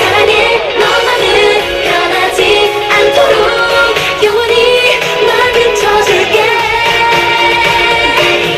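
K-pop girl-group song played loud over a stage sound system: several female voices singing into handheld microphones over an upbeat pop backing track.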